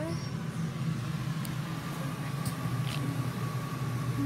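Camper trailer air conditioner running: a steady low hum, with a faint thin steady tone joining about a second in.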